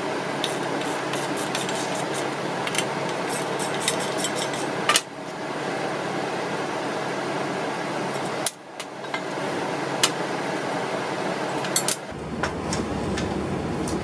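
Light metal clinks and rattles of tools and bolts as a heavy steel angle-iron plate is unbolted from a winch, over a steady background hiss.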